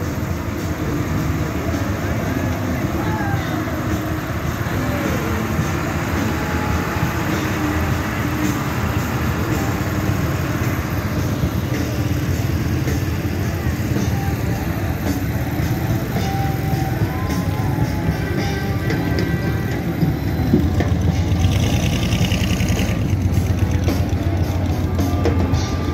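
Parade vehicles passing: the diesel engine of a light-decorated Caterpillar motor grader running as it rolls by close, then a quad ATV engine, with crowd voices and music from the parade. The music, with a drum beat, gets louder near the end.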